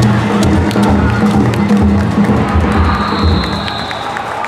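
Danjiri festival music from a passing float: a taiko drum beating steadily, about two to three strokes a second, with small hand gongs clanking sharply over it and a crowd around. It grows a little quieter near the end.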